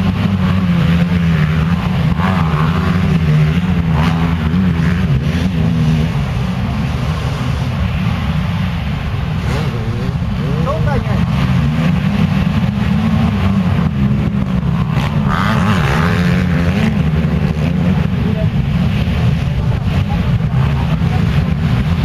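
Motocross motorcycle engines running and revving continuously, their pitch rising and falling over several seconds.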